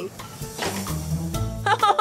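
Background music with a low, steady bass line, with a faint hiss in the first half second. Near the end a woman starts laughing.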